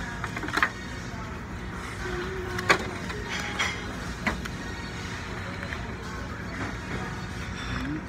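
Restaurant background: a steady low hum with faint music and voices, broken by three sharp knocks, the loudest about two and a half seconds in.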